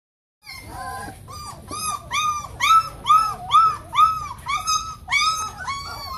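Pointer dog whining in a rapid series of high cries, about two to three a second, each rising and falling in pitch, starting about half a second in.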